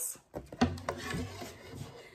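Handling noise from a rice-husk cutting board being picked up and tilted: a knock about half a second in, then about a second of rubbing and scraping.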